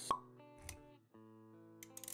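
Motion-graphics intro music with sound effects: a sharp pop just after the start, a short low thud about half a second later, then held synth chords.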